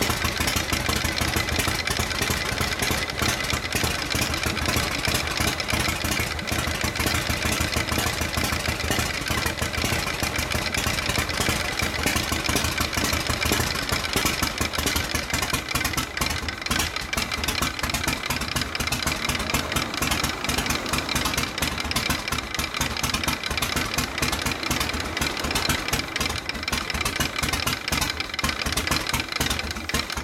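1999 Harley-Davidson FXSTC Softail Custom's 45-degree V-twin idling, the Harley three-beat (sanbyoshi) lope at a steady level throughout. The idle is super slow, so slow you can't tell whether it will stall or keep running.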